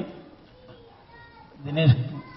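A man's voice through a microphone and PA: a phrase ends right at the start, then a pause holding a few faint, thin tones, then a short voiced sound in the second half.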